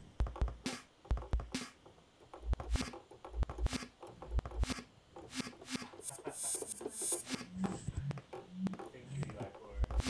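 Sampled drum kit triggered live from a MIDI keyboard through SuperCollider: kick-drum thumps and sharp snare and hi-hat hits in an uneven, improvised beat. A longer hiss comes about six seconds in.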